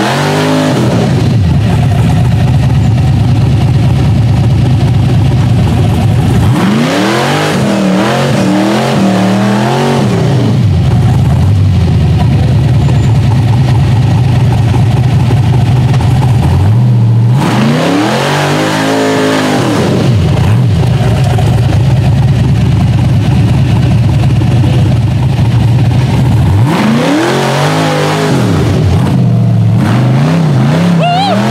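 Rock-bouncer buggy engine at full throttle, held at high revs throughout. The revs swell up and fall back about every ten seconds, four times in all.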